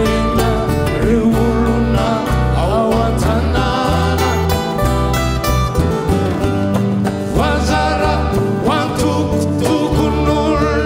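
Malagasy folk band playing live: plucked guitars over a steady bass, with voices singing melodic lines, most clearly about three seconds in and again in the second half.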